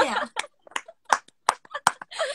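Two women laughing in short, broken bursts about three a second, with a few sharp clicks among them.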